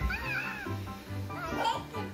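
Background music with a steady bass line, over which small children give short high-pitched squeals, once just after the start and again near the end.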